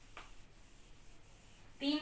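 Hand-held whiteboard eraser (duster) rubbing quietly across a whiteboard, wiping off marker writing.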